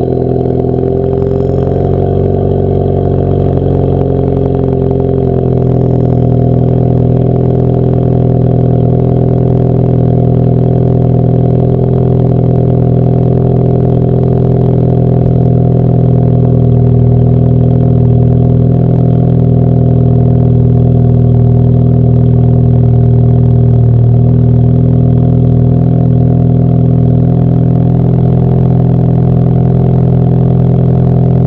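2013 Ford Focus ST's turbocharged 2.0-litre four-cylinder idling through a Borla cat-back exhaust after a cold start: a steady, loud drone whose pitch eases down slightly over the first five seconds, then holds even.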